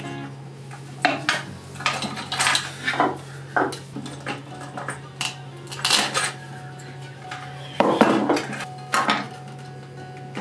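Steel cable, metal crimp sleeves and fittings clinking and clicking against a hand swaging tool as they are handled, in irregular sharp knocks with the loudest about 8 seconds in, over a low steady hum.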